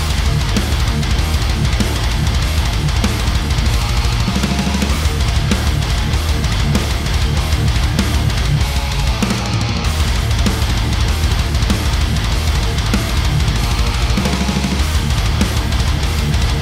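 A heavy metal track playing back at full mix: distorted electric guitars, bass guitar and a drum kit, loud and dense without a break.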